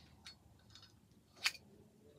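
Small metal clicks of a Zippo lighter being handled as a double-jet lighter insert is fitted into its brass case: a few faint clicks, then one sharp click about one and a half seconds in.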